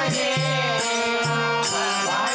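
Kannada devotional bhajan: a voice sings a gliding, chant-like melody over a steady drone, with a regular percussion beat about twice a second.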